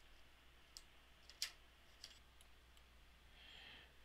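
A few faint, short computer mouse clicks, the clearest about a second and a half in, over a quiet low background hum.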